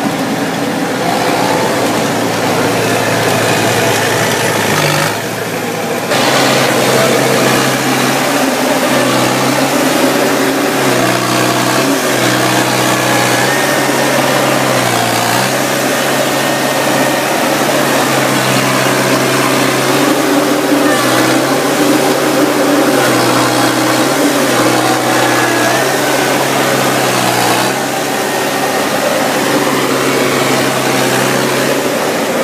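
Engine of a Pulcinelli side-by-side harvester running steadily, its pitch dipping briefly and recovering every few seconds.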